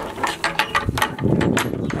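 A quick run of sharp mechanical clicks and rattles, then a short scraping rustle about a second in.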